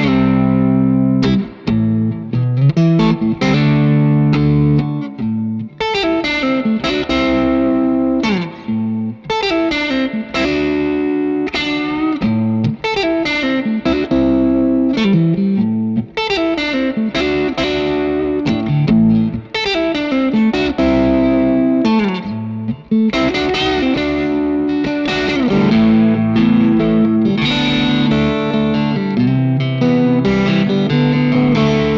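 Electric guitar with single-coil pickups played through a Supro Boost pedal set as a warm preamp boost with its dark EQ. Chords and single-note riffs ring on, with a short break about 23 seconds in.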